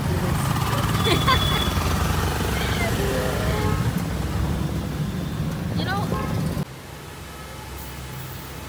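Low, steady rumble of a motor vehicle's engine and road noise, heard from aboard the moving vehicle. It cuts off abruptly about two-thirds of the way through and gives way to quieter room sound.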